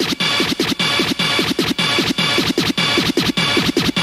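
Electronic rave music in a DJ mix, carried by rapid, rhythmic record-scratch sounds repeating several times a second, with the deep bass beat dropped out.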